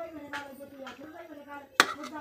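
A sharp metal clink near the end: a steel ladle knocking against a steel kadhai or plate as it is set down.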